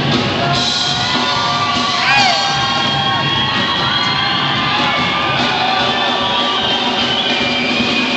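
Live duranguense band music in a large hall, with the crowd close by cheering and whooping; one loud whoop rises and falls about two seconds in.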